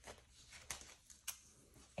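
Near silence with two faint ticks about half a second apart: fingers picking at the corner of clear adhesive shelf paper to lift its backing.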